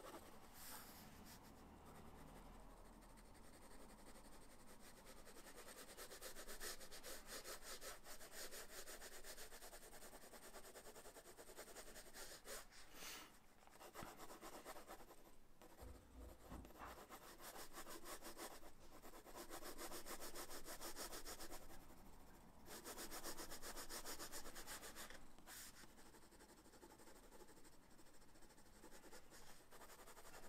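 Graphite pencil shading on sketchbook paper: faint, rapid back-and-forth scratching strokes in runs of a few seconds with brief pauses, as tone is built up in the drawing's shadows.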